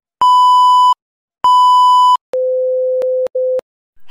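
TV colour-bars test-tone sound effect: two loud, high beeps of under a second each, then a lower steady tone that is cut by two brief dropouts before stopping.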